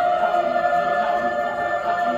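Mixed choir singing, holding long sustained notes in chords.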